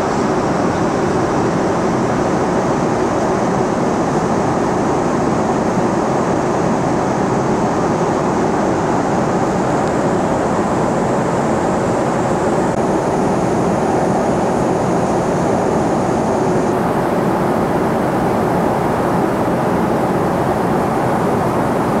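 Steady airliner cabin noise in flight: the even, unbroken sound of the engines and airflow heard from inside the passenger cabin.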